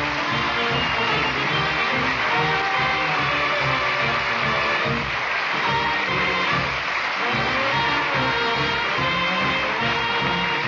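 Studio orchestra playing a swing-style music bridge with brass, the cue that closes a scene in a 1940s radio comedy. It plays steadily, with no break.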